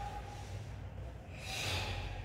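A person's single sharp breath, a short hiss about one and a half seconds in, over a low steady room hum.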